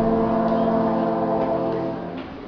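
Brass ensemble of trombones, French horn and trumpets holding one sustained chord, released near the end.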